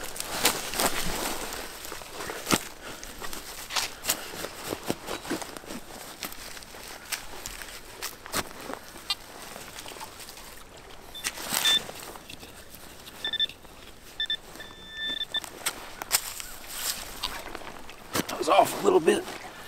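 Digging shovel cutting into leaf-littered soil and clay: repeated scrapes and knocks of the blade with leaves crackling. A few short electronic beeps come partway through.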